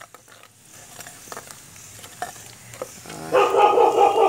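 A metal spoon clicking and scraping in a wok of spices frying in oil. About three seconds in, a dog starts barking, the loudest sound.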